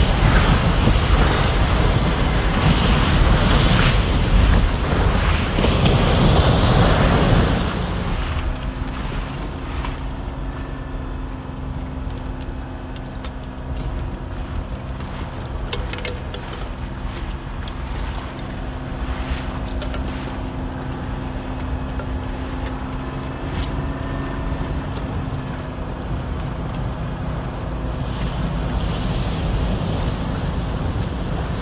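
Landing craft running through heavy sea, a loud wash of waves and spray against the hulls. About eight seconds in it drops to a quieter, steady drone of the boat's engine, with water against the hull and a few small sharp clicks.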